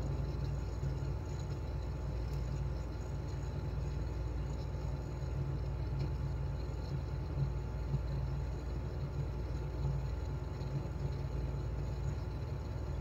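Steady low background rumble, with a few faint clicks in the middle.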